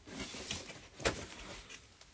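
Handling noise: rustling and shuffling as shoes are moved about, with a sharp knock about a second in.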